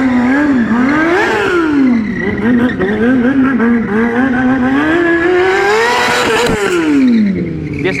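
Stunt motorcycle's sport-bike engine revving up and down as it is ridden through tricks: the pitch climbs and drops about a second in, wavers, then climbs slowly to a peak about six seconds in and falls away.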